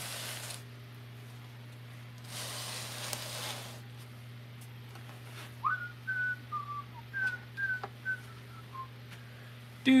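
A person whistling a short tune of about nine brief notes, several sliding down in pitch, over a steady low hum. Two short rustling hisses come before it.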